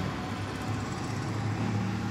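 A steady low mechanical hum with a faint noisy haze over it and no distinct knocks or clinks.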